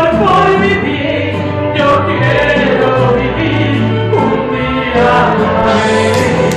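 A woman singing a gospel song into a microphone, amplified, over loud musical accompaniment with sustained bass notes.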